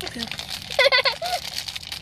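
A foil candy wrapper being crinkled and fiddled with in the hands, a fine irregular crackle. A brief high-pitched vocal squeal cuts in a little under a second in and is the loudest sound.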